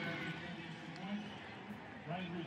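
A faint voice talking, much quieter than the main commentary, over a low steady background hiss of stadium ambience.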